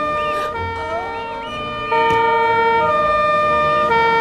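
Two-tone police siren alternating between a low and a high note about once a second, with music underneath; it gets louder about two seconds in.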